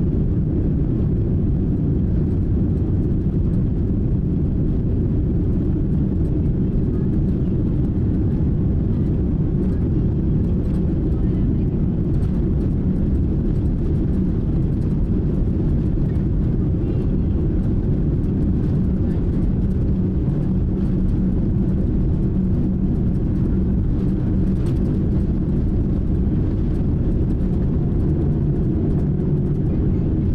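Cabin noise of an ANA Boeing 787 with Rolls-Royce Trent 1000 engines at takeoff power during the night takeoff run and climb-out. A steady, loud, deep rumble of engines and rushing air heard inside the cabin.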